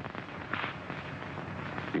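Crackling hiss of an old film soundtrack between lines of dialogue, with a short breathy hiss about half a second in.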